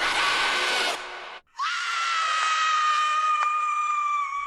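Two horror scream sound-effect samples played one after the other. The first, a high held scream, ends about a second in. After a brief silence the next begins at about one and a half seconds with a quick upward glide, then holds one long high scream that sinks slightly in pitch.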